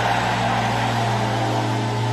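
Background music: a low sustained keyboard chord held steady, like a drone.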